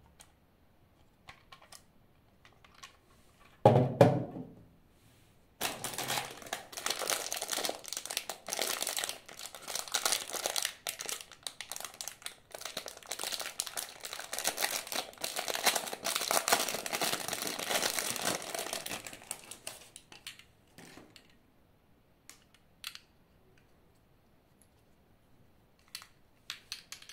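Clear plastic bag crinkling for about fourteen seconds as it is handled and opened to take out a small plastic-cased electric motor. About four seconds in there is a single short thump, and a few faint clicks follow the crinkling.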